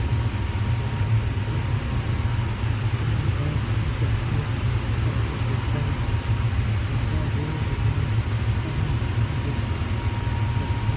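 A steady low rumble, with a faint thin high tone held above it.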